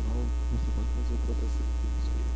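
Steady, loud low electrical mains hum picked up by a computer microphone recording.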